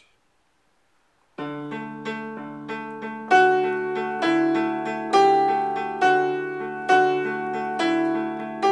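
Upright piano playing in D major, starting about a second and a half in: low single notes alternate root and fifth in a steady pulse. From about three seconds in, repeated chords higher up join, starting on the third of each chord.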